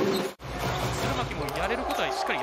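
Game sound from an indoor basketball court: a ball bouncing on the hardwood over arena background noise. The audio cuts out abruptly for an instant about a third of a second in.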